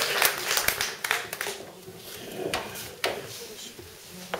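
Scattered audience clapping that thins out and dies away over the first second or two, followed by a few isolated knocks.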